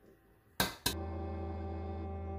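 Two sharp knocks about a quarter second apart, an egg being cracked against the rim of a stainless steel pot. Steady background music with sustained tones comes in right after them.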